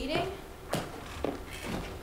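Footsteps on a wooden stage floor: two knocks about half a second apart, after a brief voice at the start.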